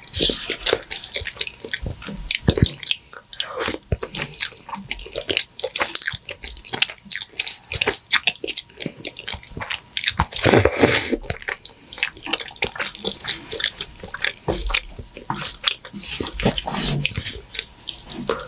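Close-miked eating of creamy fettuccine alfredo: wet chewing and mouth sounds with many sharp clicks, and a longer slurp of noodles about ten seconds in.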